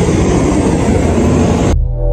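Loud steady roar of aircraft engines running on an airport apron. It cuts off suddenly near the end, where a few steady tones take over.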